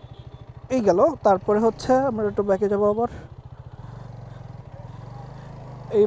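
Hero Karizma XMR 210's single-cylinder engine running steadily at low road speed, a low even hum that stands out on its own in the second half. A man talks over the first half.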